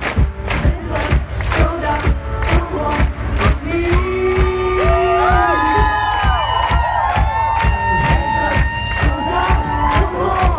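Live pop-rock band playing on an outdoor festival stage, recorded from the audience: a steady drum beat throughout, with sung vocals over it that swell about four seconds in, and a cheering crowd.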